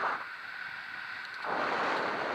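Wind rushing over the microphone of a camera on a moving bicycle, a steady noisy rush. Its deeper part cuts out suddenly for about a second in the middle, then comes back.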